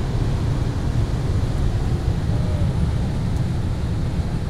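Steady low road, wind and engine noise heard inside a BMW F30 328i cabin at highway speed.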